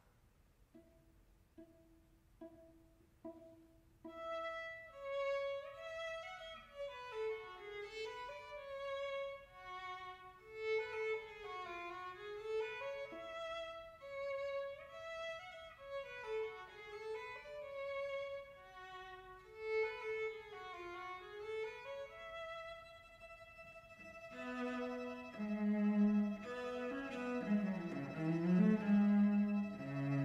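String trio of violin, viola and cello playing a classical dance piece: a few short, quiet repeated notes about a second in, then the full melody from about four seconds. Near the end the lower strings come in stronger and the music gets louder.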